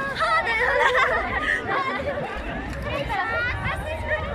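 Crowd chatter: several people talking at once, overlapping voices with no one voice standing out, loudest in the first second or so.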